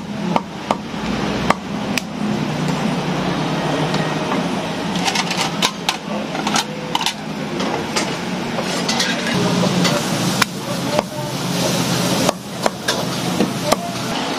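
Cleaver chopping frogs on a thick round wooden chopping block: irregular sharp knocks, over a steady low hum.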